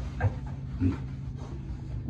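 Young pigs grunting: two short grunts, one just after the start and one about a second in, over a steady low hum.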